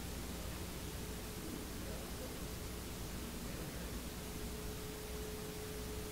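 Room tone: a steady hiss with a faint low hum and a thin steady tone that becomes a little plainer in the second half.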